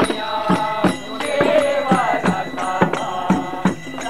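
Devotional singing led by a man's voice through a microphone, with percussion keeping a steady beat of about two to three strokes a second.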